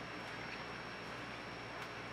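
Quiet room tone: a steady faint hiss with a low hum and a thin high whine, and one faint click near the end.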